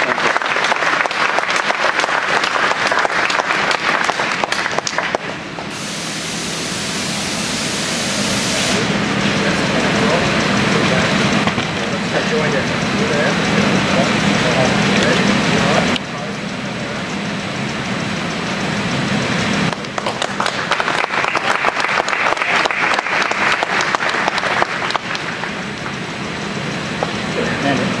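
A crowd applauding and chattering. The clapping is strongest at the start and again in the last third, with several abrupt changes in the sound in between.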